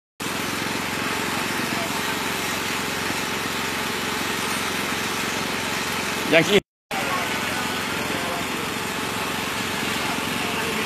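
Steady rushing background noise, broken by a short spoken sound about six seconds in and a brief dropout just after it.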